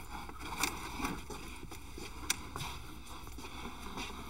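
Quiet scraping and rustling of plastic PEX tubing being pulled along a wooden joist bay, with a few light knocks.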